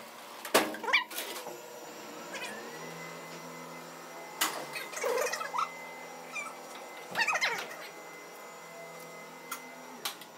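Freight elevator's metal mesh gate clanking and squealing as it is pulled shut. A steady motor hum starts about two and a half seconds in, with more metallic clanks and rattles partway through and again later on.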